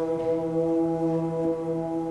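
Symphonic wind band holding one long, steady chord, with a deep horn-like brass tone to it.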